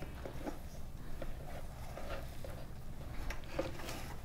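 Gloved hands squeezing and massaging chopped banana flower to work coconut oil through it: a faint, soft rustling and squishing with a few small ticks.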